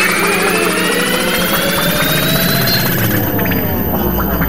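Electronic time-machine transition sound effect: many layered tones sweeping steadily upward over a constant low throb, holding at an even level.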